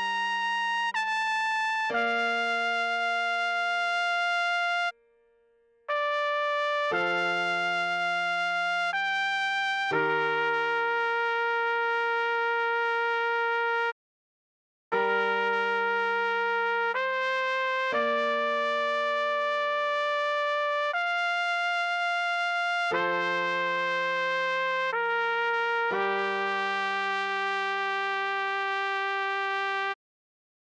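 Trumpet playing a slow melody of long held notes over a low held accompaniment, with two short breaks of silence. This is the tutorial's half-speed play-through.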